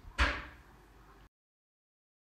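A single short knock as a steel tape measure is set against a metal pipe, with a brief ringing tail, then a faint hiss that cuts off suddenly.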